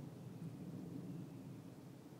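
Quiet, steady low background rumble with no distinct events.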